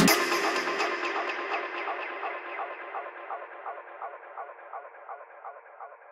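Outro of an electro breakbeat dance track: the beat and bass cut out at the start, leaving a repeating electronic pulse, about four a second, that fades away.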